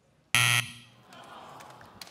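The Family Feud game-show buzzer gives one short, loud buzz: the signal that the answer scored zero and is not on the survey board.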